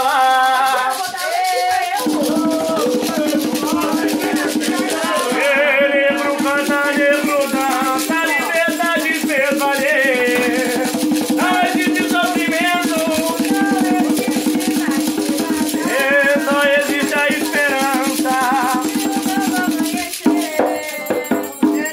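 A man singing an Umbanda chant (ponto) to a hand-played atabaque drum and a shaken rattle. The drum comes in about two seconds in, and the rattle keeps up a steady rapid shake under the voice.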